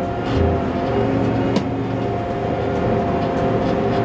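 Armoured personnel carrier's engine running steadily, heard from inside the driver's compartment, with a steady whine over the low engine note.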